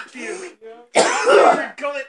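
A man coughing and clearing his throat, with a loud, harsh burst about a second in and a short rattling rasp near the end.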